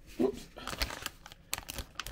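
Plastic bag of Lego pieces crinkling quietly as it is handled, with a few light clicks. A brief sound of voice comes just after the start.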